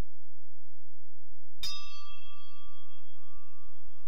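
A brass hand bell struck once about a second and a half in, ringing on with a slowly fading tone, rung to open a time of silent prayer. A steady low electrical hum runs underneath.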